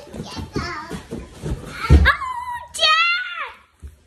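A young child's high-pitched wordless vocalizing, two drawn-out calls in the second half. Beneath it are scuffs and knocks of a child tumbling on a floor mat, with one heavy thump about two seconds in.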